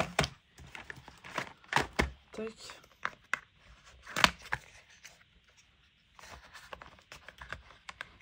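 Acrylic paint marker and its plastic storage box being handled: a series of sharp plastic clicks and taps, then soft rustling and scratching near the end.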